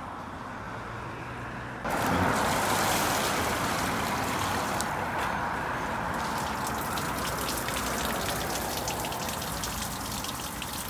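Water pouring onto asphalt and running into a storm drain grate. It starts suddenly about two seconds in and carries on as a steady splashing rush.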